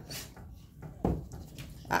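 A dog making short whining vocalizations, about three in two seconds, the last a falling whine.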